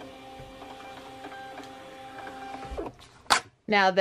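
Desktop thermal label printer printing a shipping label: a steady whine of several fixed pitches from its feed motor for nearly three seconds, then it stops. A single sharp click follows a moment later.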